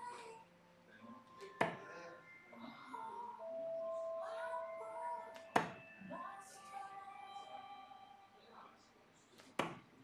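Three steel-tip darts striking a bristle dartboard, one sharp thud about every four seconds, over faint talk in the room.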